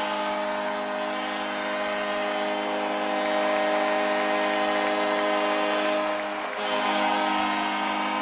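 Arena goal horn sounding one long sustained chord, briefly dipping about six and a half seconds in, over a cheering crowd.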